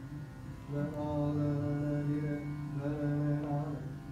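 Dhrupad singing: a male voice holds one long low note, starting about a second in and fading just before the end, over a steady tanpura drone.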